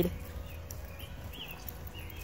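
Quiet outdoor ambience with a steady low rumble on the phone's microphone and two short, faint high chirps about a second in.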